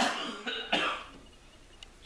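A person coughing twice, a sudden first cough and a second one just under a second later.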